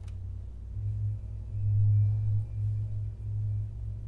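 Low droning tone from a video's soundtrack played through speakers in a room, swelling and fading in slow pulses, loudest about two seconds in, with a faint thin high tone above it.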